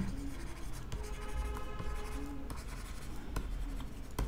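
Faint sound of a stylus tip tapping and scratching on a tablet screen in short strokes while words are handwritten, with scattered small clicks.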